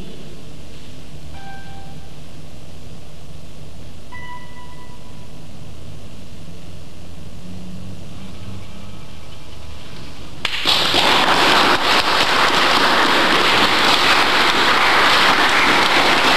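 A classical guitar plays a couple of last soft, high ringing notes at the close of a piece. Then, about ten and a half seconds in, audience applause breaks out suddenly and carries on, loud and dense.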